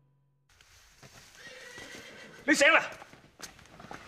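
A horse whinnying once, loud and wavering, about two and a half seconds in, over a low background.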